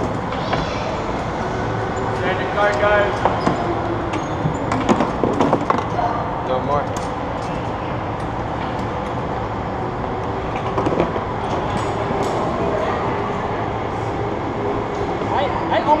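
Indistinct voices and chatter of people in a large indoor hall, over a steady background rumble.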